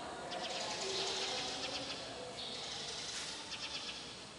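Birds flapping their wings in several short bursts of fluttering.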